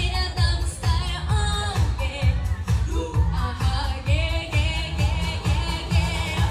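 Girls singing a pop song into handheld microphones over a backing track, amplified through PA speakers, with a steady bass beat a little over two beats a second.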